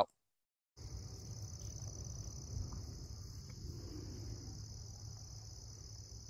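A faint, steady, high-pitched insect chorus with a low outdoor rumble beneath it, starting about a second in.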